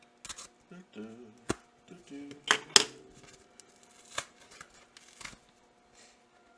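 Box cutter slicing the packing tape and cardboard of a book mailer, with scraping and about five sharp clicks and snaps as the cardboard gives.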